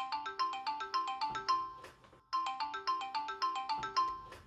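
A mobile phone's melodic ringtone, an incoming call: a quick run of short, bright notes, played through twice with a brief pause between.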